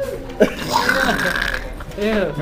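Teenagers laughing, with a sudden vocal outburst about half a second in and a drawn-out laughing sound through the middle.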